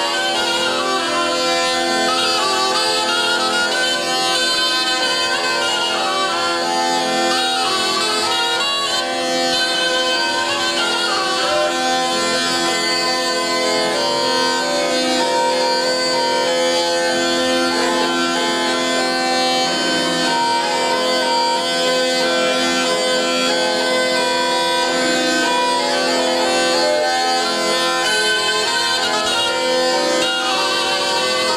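Zampogna (Italian bagpipe) playing a melody over steady, continuous drones, joined for part of the time by a small wooden shawm.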